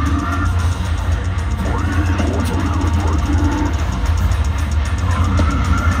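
A deathcore band playing live through a festival sound system: distorted guitars and drums over a heavy, booming low end, loud and unbroken.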